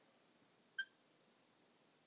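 Near silence broken by a single short, high beep a little under a second in.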